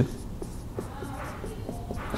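Marker pen writing on a whiteboard: faint scratchy strokes as letters are drawn.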